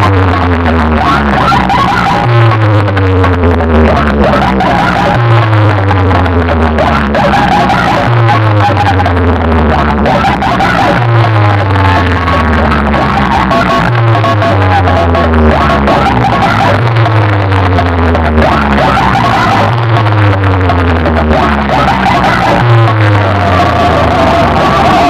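Loud DJ music blasting from a huge speaker-box sound system: a heavy bass hit about every three seconds, each followed by falling tones.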